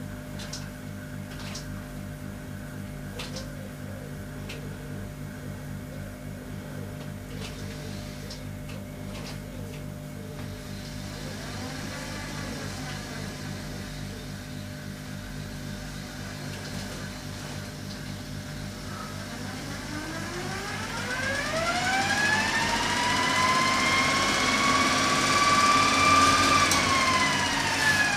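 Unloaded DC traction motor driven by a home-built Cougar motor controller, run up slowly under throttle: a low steady hum with faint pitch swells at first, then a whine that climbs steeply in pitch about two-thirds in, holds high and louder, and begins to drop near the end as the throttle eases. With no load the motor draws few amps, so the controller gives little fine speed control.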